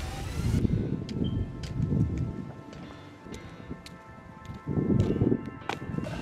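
Background hip-hop music: a beat with strong bass hits under sustained held tones.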